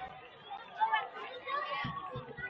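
Indistinct chatter of several voices talking at once, with a louder voice about a second in.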